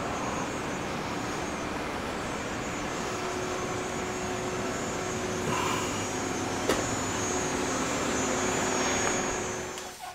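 A steady mechanical drone with a low hum running through it, and a single click about seven seconds in.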